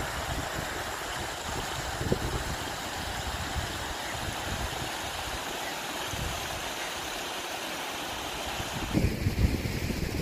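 Steady rush of shallow water pouring over a low ledge between rocks, with wind buffeting the microphone as a gusty low rumble. About a second before the end the rush drops away and the wind rumble grows louder.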